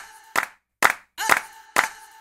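Electronic dance music with a sharp clap-like hit on every beat, about two a second, each followed by a short held tone.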